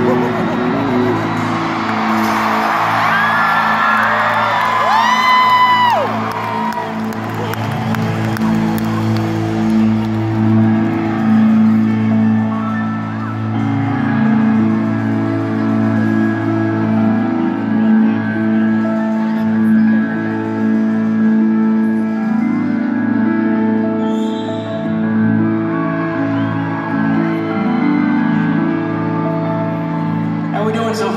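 Slow, sustained keyboard chords played live through an arena's sound system, the chord changing every second or two. Fans' high whoops and screams rise over it a few seconds in, with general crowd noise underneath.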